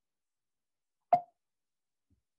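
Silence broken by a single short, sharp pop about a second in.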